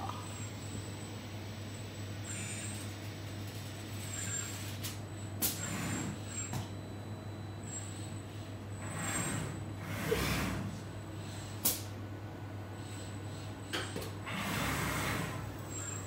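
Automated hot-dog robot arm working inside its glass case: a steady machine hum with a few sharp clicks and several short swells of hiss as the arm and gripper move.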